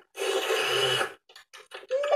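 Cartoon sound effect of spaghetti being slurped up, one noisy slurp lasting about a second, followed by a few faint short ticks.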